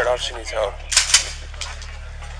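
Two sharp gunshots about a second in, a fifth of a second apart, picked up on a police body camera's microphone over its steady low hum.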